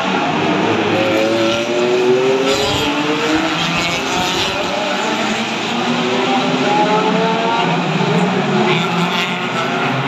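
Several touring race cars' engines accelerating past in a stream, one after another. Their revs rise in overlapping climbs.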